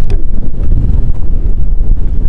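Loud wind buffeting the microphone: a dense low rumble that flutters in strength with the gusts.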